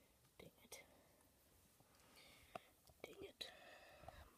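Near silence, with faint whispering and a few soft clicks.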